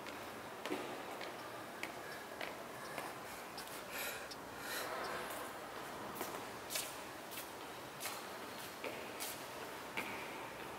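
Sneakers tapping and scuffing on a hard tiled floor: about a dozen irregular light taps, with two longer scuffs around the middle, over faint room noise.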